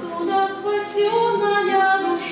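A woman singing a slow melody in long held notes, accompanied by her acoustic guitar.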